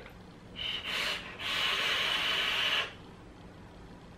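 A draw on an electronic cigarette's rebuildable atomizer: airflow hiss and the fizz of the firing coil, first two short pulls, then one long steady draw of about a second and a half that cuts off abruptly.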